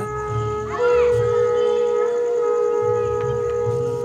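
Conch shells (shankh) being blown, a long steady note held through, with one note giving way to another about a second in.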